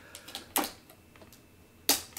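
Light clicks and taps of hands and nails on the hard plastic shell of a Roborock robot vacuum as they work the red pull tab of the protective film over its front camera, with a stronger click about half a second in and a sharp snap just before the end.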